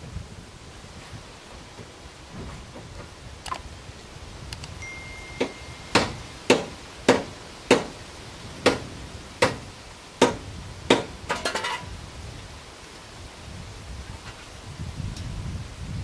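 Tool striking metal under the car: about ten sharp, ringing knocks roughly half a second apart, ending in a quick rattle of clicks, as a possibly seized fastener left from a torn-off underbody part is worked loose.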